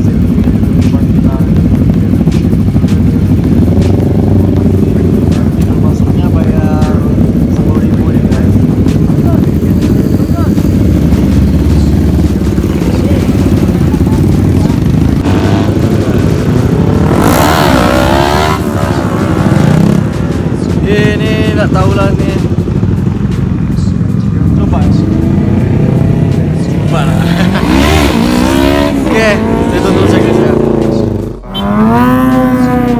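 Several sport motorcycles idling together, with the throttle blipped so the engine pitch rises and falls, once about halfway through and again near the end. People talk over the engines.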